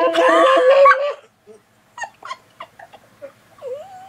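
A high-pitched 'la-la-la' vocalizing through a Skype call's low-voice effect, so it comes out sounding high and low at the same time; it stops about a second in and is followed by short bursts of laughter.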